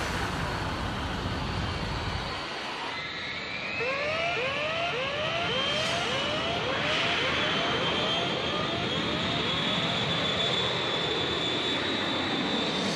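Electronic music gives way, about three seconds in, to a concert crowd screaming over a slowly rising high tone. Over this, a run of short rising siren-like whoops, about two a second, plays as a show-intro effect.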